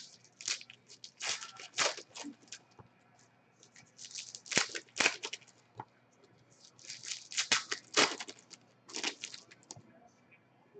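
Trading cards being handled and dealt onto stacks on a table: bursts of rustling, sliding and light slapping of card stock and plastic holders, coming in about five clusters with short pauses between.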